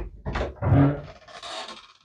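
A wooden door's handle is worked and the door pulled open: a sharp start, then short rubbing and scraping sounds with a brief low groan just under a second in, and a rough hiss near the end as the door swings.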